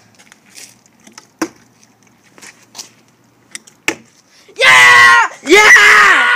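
Two short sharp knocks of a flipped plastic water bottle landing, then, from about two thirds of the way in, a boy's two long, loud, high-pitched excited yells.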